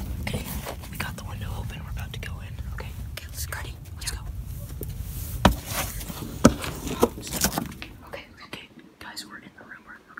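Whispering over a low rumble, with a series of sharp knocks and scrapes, loudest between about five and a half and seven and a half seconds in, as a house window is opened and climbed through. The rumble drops away about eight seconds in.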